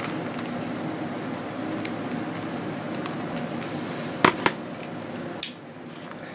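A plastic CD jewel case being handled and set down on cardboard: light clicks, two sharper clacks about four seconds in, then a brief scrape, over a steady room hum.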